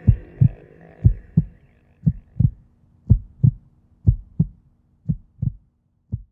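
Heartbeat sound: pairs of low thumps, a double beat about once a second, slightly fainter near the end.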